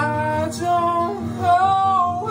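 A man singing long, held high notes over a Taylor acoustic guitar, with a strum about half a second in.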